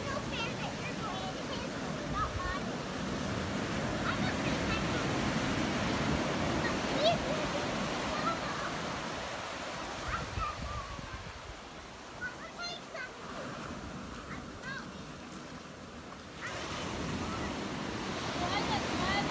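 Ocean surf washing up a sandy beach, a steady rush of water that eases off for a few seconds about two-thirds through and swells again near the end, with young children's high voices calling out over it.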